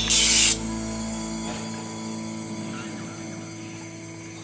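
A short, loud hiss of LPG spraying for about half a second at the adapter between an upturned 3 kg LPG cylinder and a butane gas canister being refilled. Background music plays throughout and fades.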